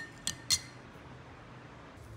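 A few light clicks in the first half second, then faint room noise.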